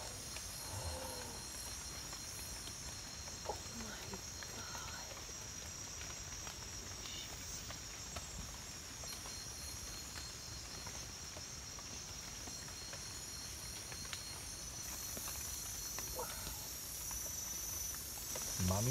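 Night-time rainforest insect chorus: a steady, high-pitched drone of many calling insects, with a few faint murmured voices now and then.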